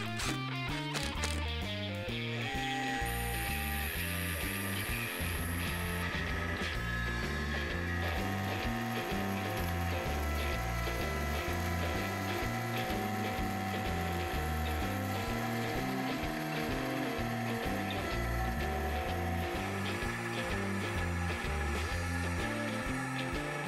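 Background music with a steady bass line, over a CNC router machining aluminum sheet with a 1/4-inch solid carbide spiral O-flute bit: steady whining tones from the machine and rapid mechanical ticking.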